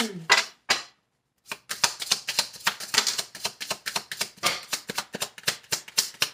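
A deck of reading cards being shuffled by hand: a fast, irregular run of light card clicks and slaps, broken by a short pause about a second in.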